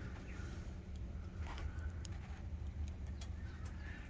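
Quiet outdoor background: a low steady rumble with a few faint bird chirps.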